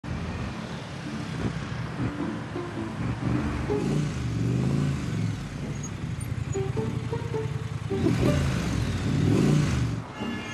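City street traffic, cars and motorbikes driving past, growing loudest near the end as one passes close. Background music plays over it.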